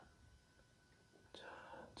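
Near silence: room tone, then a single softly spoken word near the end.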